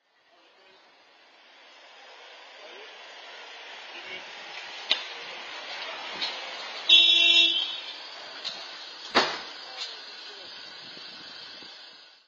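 Street noise of traffic swelling in, with a vehicle horn honking once, briefly, about seven seconds in. Sharp single knocks sound a little before the honk and again about two seconds after it.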